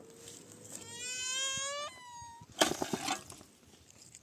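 A small child's drawn-out whining cry, rising slowly in pitch about a second in and breaking into a shorter higher wail, then a brief clatter of stones and rubble near the middle.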